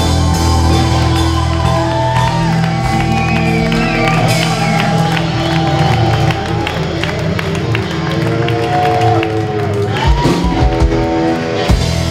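Live rock band playing: electric guitar notes bending over a steady bass and drums, in a large hall. A few loud drum hits come near the end.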